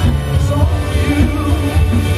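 Live band music from drums, bass, electric guitars and keyboards, with a steady heavy bass beat.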